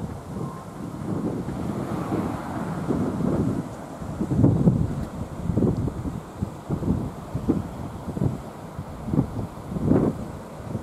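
Wind buffeting the microphone in irregular low gusts, strongest about halfway through and again just before the end.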